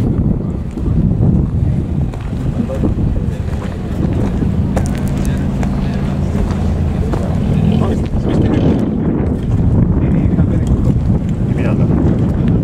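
Wind buffeting the microphone over the steady rumble of an off-road vehicle's engine running, with voices in the background.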